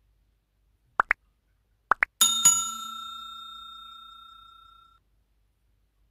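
Like-and-subscribe animation sound effect: two pairs of short rising pops, then a bell chime struck twice that rings out and fades over about two and a half seconds.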